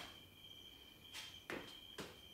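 Faint, soft footsteps of trainers on a rubber gym floor, a few quick scuffs, over a steady faint high-pitched tone.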